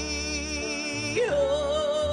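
A woman singing a long held note with vibrato at the end of a gospel hymn line, leaping up to a higher held note about a second in. Her own piano accompaniment plays underneath.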